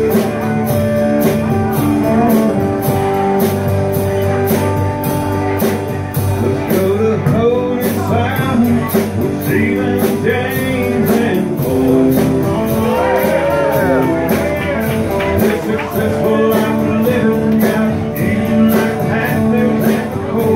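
Live band playing a blues-rock number: electric and acoustic guitars over drums keeping a steady beat.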